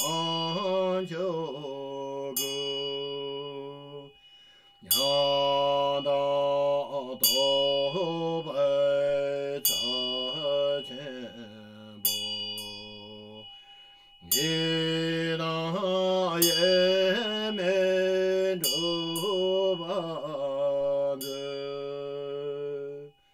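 A deep male voice chanting a Tibetan Buddhist mantra in long, melodic held notes, pausing briefly about four seconds in and again near the middle. Sharp ringing strikes, like a small hand bell, sound over the chant every second or so.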